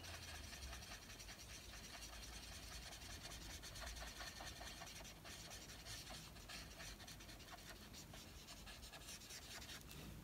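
Faint scratching of an alcohol marker's nib rubbing over card in repeated colouring strokes.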